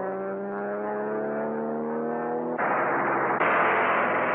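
Propeller airplane engine droning with its pitch slowly rising, then cut off near the end by a long loud burst of aircraft machine-gun fire, on an old film soundtrack.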